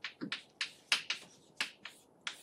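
Chalk tapping and clicking against a chalkboard as an equation is written: a run of short, irregular sharp taps, about eight in two seconds.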